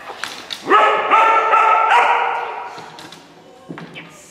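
A dog barking in a loud, high, drawn-out vocalisation about a second in. It comes as three sustained barks that run together for over a second and then fade. Two sharp clicks come just before it.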